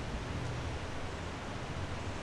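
Steady outdoor background hiss with a low rumble underneath, even throughout, with no distinct events.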